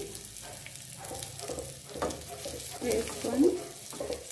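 Hot oil tempering of spices, garlic and red chillies sizzling in a small steel pan as chopped raw onion goes in, with a spoon stirring and scraping through it.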